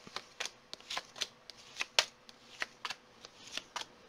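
Wildwood Tarot cards being handled and drawn from the deck: a string of irregular light card snaps and taps, the sharpest about two seconds in.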